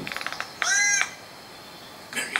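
Bird calls from a nature documentary played through a laptop's built-in speakers: a fast rattle of clicks, then one loud call that rises and falls in pitch, about half a second in.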